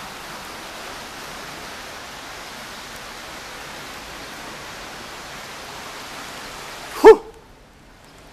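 Steady outdoor hiss, then about seven seconds in a single short, loud, pitched yelp, after which the background goes much quieter.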